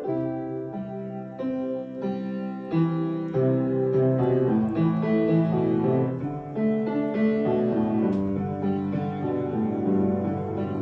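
Background piano music.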